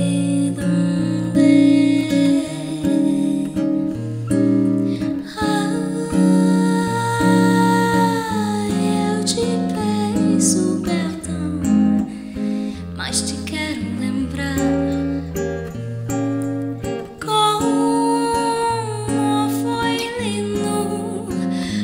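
Classical-style acoustic-electric guitar playing a bossa nova accompaniment of plucked chords over a moving bass line. Twice, a woman's voice holds long wordless notes over it: once in the middle, where the note bends down at its end, and again near the end.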